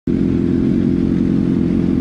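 Sport motorcycle engines idling at a standstill, running at a steady, unchanging pitch.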